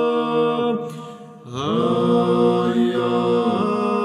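Unaccompanied male ensemble singing Georgian Orthodox church chant in three-part polyphony, holding sustained chords in an embellished setting of the hymn. The voices stop briefly about a second in, then enter together on a new chord.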